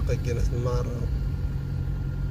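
Steady low rumble of a car moving slowly, engine and road noise heard from inside the cabin.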